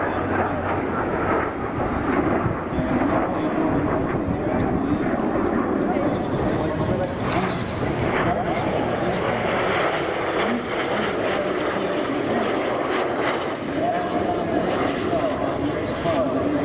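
Jet aircraft flying a formation display pass, their engines making a steady, continuous noise, with voices audible beneath it.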